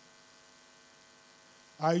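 Faint, steady electrical mains hum from the hall's sound system, heard through a pause in the reading. A man's voice comes in on the microphone near the end.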